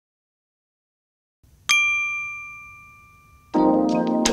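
Silence, then a single bright ding about halfway through that rings on and slowly fades. Near the end, intro music starts up.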